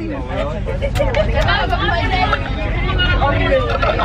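Overlapping chatter of several young people inside a bus, over the steady low rumble of the bus's engine and road noise.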